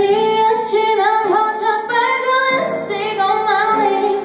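A young woman singing a pop song into a microphone, with held notes and small pitch turns on some of them.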